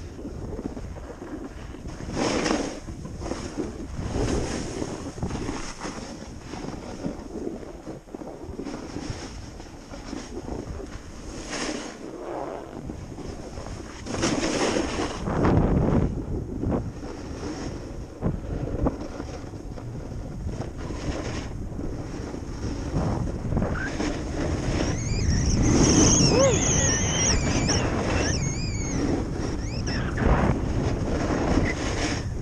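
Wind noise on the microphone and the rushing scrape of sliding down a packed snow run, swelling in surges as the rider turns. Near the end a wavering high-pitched sound rides over the rush.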